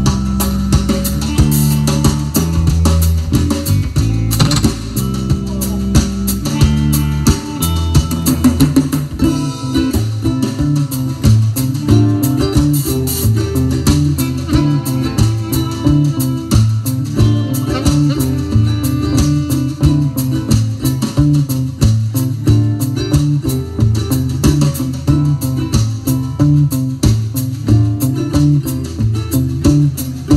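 Live band playing the instrumental intro of a song: guitars over a bass line and a steady drum-kit beat.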